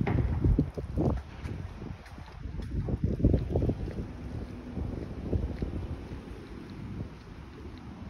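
Wind buffeting a phone's microphone in irregular gusts, strongest in the first second and again about three seconds in.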